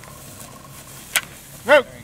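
A single sharp metallic click of a break-action shotgun being broken open after firing, followed by a short spoken word near the end.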